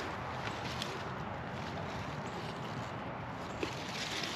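Steady low outdoor background hiss with a few faint ticks and rustles from hands handling freshly pulled radish plants.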